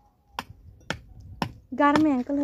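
Sharp, hard knocks at an even pace of about two a second, four in all, typical of a hammer striking bricks. A woman's voice comes in briefly near the end.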